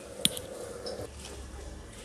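A single light metallic tap, a steel bowl against a steel pot as sliced onions are tipped in, followed by low, quiet room noise.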